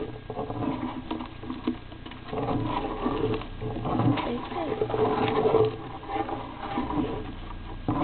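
Green-cheeked conure chicks calling in the nest box, a run of rapid, repeated calls that is loudest from about two and a half to six seconds in, with light scratching and clicks in the bedding.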